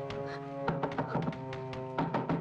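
Film background music holding steady chords, with one sharp knock about two-thirds of a second in and a few lighter taps after it.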